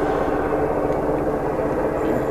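Steady low rumbling noise, even in level, with no clear speech sounds in it.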